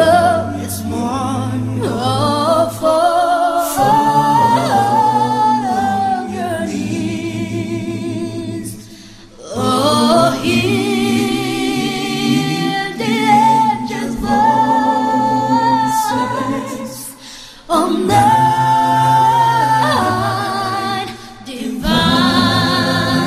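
Live a cappella group singing by mixed male and female voices in harmony, with sustained, wavering held notes. The singing briefly drops away about nine seconds in and again near seventeen seconds.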